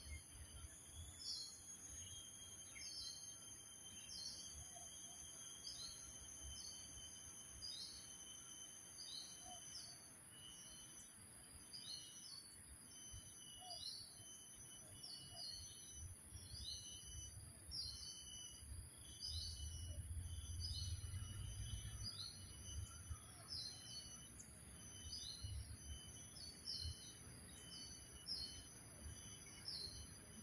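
A songbird repeating a short, high, falling call note about once a second, over a steady high-pitched background hum. Low wind rumble on the microphone swells about twenty seconds in.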